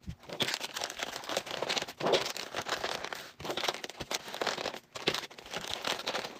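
Plastic packaging crinkling and rustling in irregular bursts as candy pouches are handled and packed into a plastic mailer bag.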